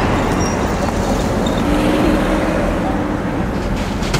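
Steady road traffic noise, a low rumble of vehicles going by, with one engine hum rising faintly about midway through.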